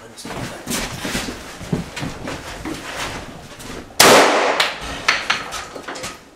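One loud gunshot about four seconds in, ringing off the walls of an indoor range, among quieter scattered knocks and clatter of the shooter moving with his gun.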